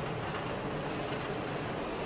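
Steady background noise of a large warehouse store: an even hiss with a low hum underneath.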